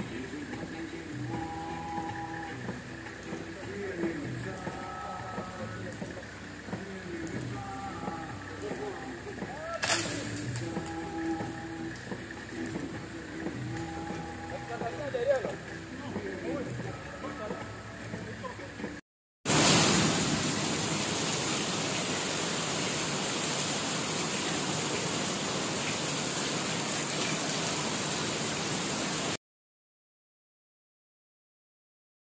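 People's voices calling out, with a sharp knock about ten seconds in. After a brief break, a steady, even rushing noise follows for the rest.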